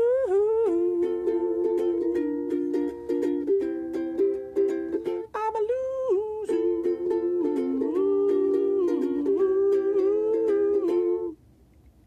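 Makala ukulele strummed while a man hums a wordless tune over it, both stopping abruptly near the end.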